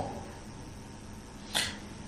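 Quiet room tone with a faint steady hum, broken about a second and a half in by one short, sharp in-breath from the lecturer.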